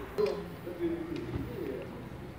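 A low, soft cooing bird call, a few short held notes, over faint street background.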